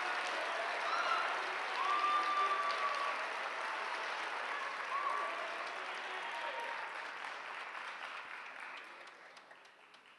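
A large audience applauding, with a few cheers rising above the clapping. The applause dies away over the last few seconds.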